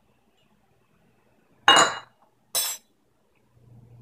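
A metal spoon clinks twice against a small glass dish, about a second apart, as coconut butter is scooped and knocked off. Each strike is short and bright, with a brief high ring.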